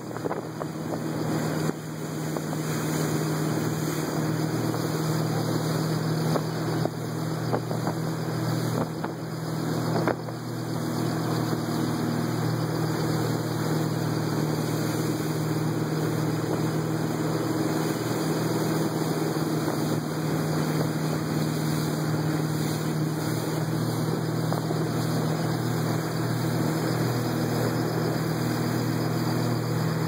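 Motorboat engine running steadily at speed while towing a tube, a constant low drone under the loud rush of the wake and spray.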